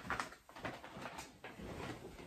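Faint knocks and rustling of a person moving about a small room, with a sharp click right at the start.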